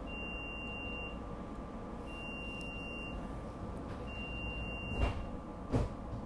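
Three long, high electronic beeps about two seconds apart, heard inside a SEPTA Regional Rail car over its steady hum. Two heavy thumps come near the end.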